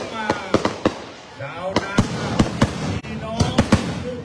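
Firecrackers going off: about a dozen sharp bangs at irregular intervals, with people talking.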